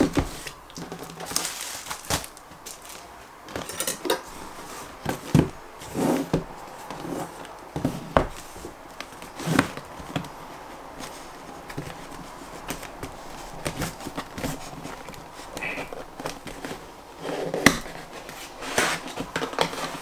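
Cardboard motherboard box being handled and opened: scattered taps, knocks and rustling of the packaging.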